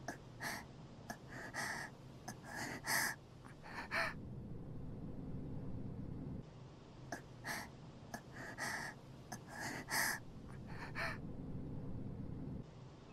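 A girl's voice gasping and panting in short, breathy breaths, one run in the first few seconds and another after a pause of about three seconds.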